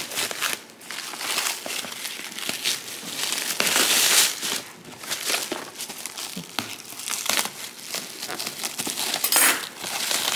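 Plastic bag and cling-film packaging crinkling and rustling as it is pulled and torn open by hand, with some paper rustle. The crackling is loudest about four seconds in, with another sharp flare near the end.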